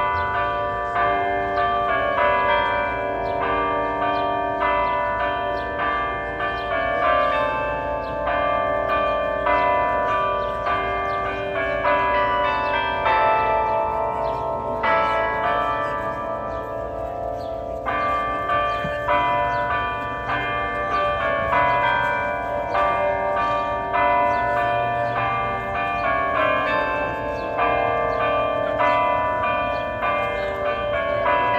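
The Delacorte Clock's bells playing a nursery-rhyme tune, a continuous melody of struck, ringing bell notes, while its bronze animal figures revolve.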